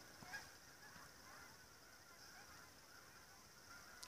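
Faint, distant honking of a flock of geese, heard against near silence.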